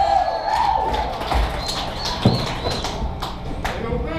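Noise on stage and in the room between songs: a shout or cheer early on, scattered knocks and clicks, and one heavy thump a little after two seconds in, over the hum of the amplifiers.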